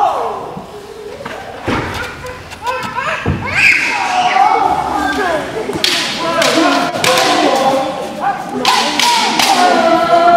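Kendo sparring: wooden and bamboo swords strike several times with sharp clacks, while the fighters give long, loud kiai shouts.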